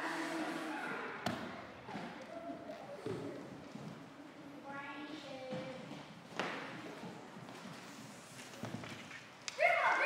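Children's voices in a large room, with a few separate thumps on a hard floor; the voices grow louder near the end.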